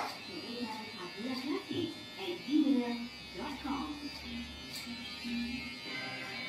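Electric hair clippers buzzing steadily, under indistinct voices and music.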